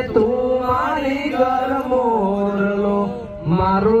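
Slow singing with long drawn-out notes, in a chant-like style, and a short break about three seconds in.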